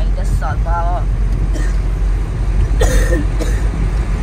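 Steady low rumble of a moving vehicle under brief snatches of talk, with a short cough-like burst about three seconds in.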